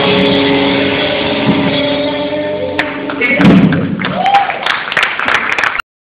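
A live rock band's closing chord ringing out on electric guitars, stopped about three seconds in by a final hit. After it come voices and scattered claps and sharp knocks from the room, and the sound cuts off just before the end.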